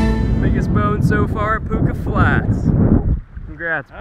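Strong wind buffeting the microphone, with a man's voice over it; the wind rumble drops away at about three seconds.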